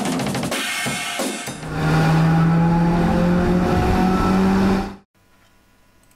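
Logo-intro music sting: a burst of drum-kit percussion, then a loud sustained low hit with slowly falling overtones that cuts off abruptly about five seconds in. Faint room tone follows.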